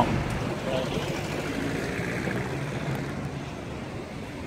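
Steady street traffic noise, a continuous hiss that slowly fades.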